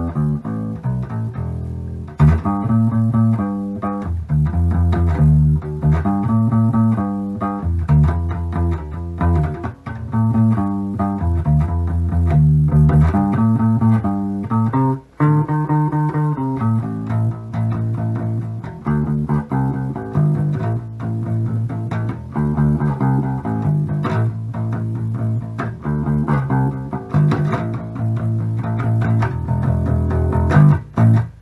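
Homemade electric bass with a wine-box body and a reclaimed bass neck, fingerpicked in a continuous bass line of low, sustained plucked notes, with a brief break about halfway through.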